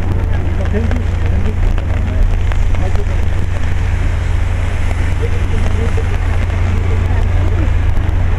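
Steady wind rumble on the microphone over a haze of rain and city traffic noise, with faint ticks and faint, indistinct voices.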